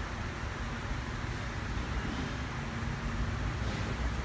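Steady low background hum and hiss, with no distinct event standing out.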